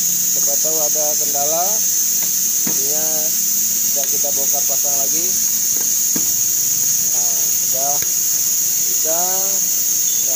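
A loud, steady high-pitched hiss runs throughout, with voices talking in the background and a couple of light clicks.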